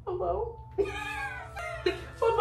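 A voice calling "hello?", drawn out and high-pitched, in two parts: a short gliding sound at the start, then after a brief break a longer, steadier call.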